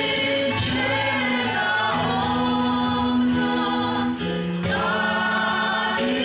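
A congregation singing a slow hymn together, with long held notes that change every second or two.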